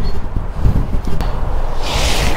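Wind rumbling on the microphone while an 8-iron golf swing begins; near the end a rushing hiss swells as the club goes back.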